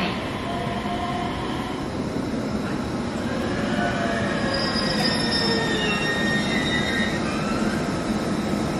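Electric commuter train pulling in and slowing over a steady running rumble, its wheels squealing in several high tones from about two seconds in as it brakes.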